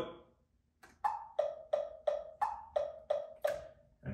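Computer metronome clicking at 175 beats per minute, about three clicks a second, starting about a second in and stopping near the end, with some clicks higher in pitch than others.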